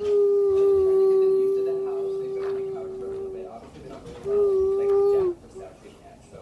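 A voice-like hoot held at one steady pitch for about three and a half seconds, then a second, shorter hoot about a second long that drops off at its end.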